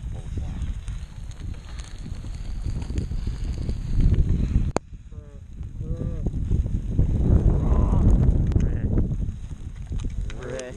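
Wind buffeting the camera microphone on an open chairlift, an uneven low rumble, with a single sharp click a little before halfway.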